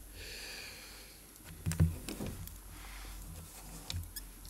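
Faint handling sounds of a wristwatch being set down on a round watch holder on the bench. A soft hiss in the first second, then a few light knocks, the clearest a little under two seconds in.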